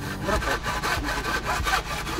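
Hand saw cutting through a wooden beam in steady back-and-forth strokes.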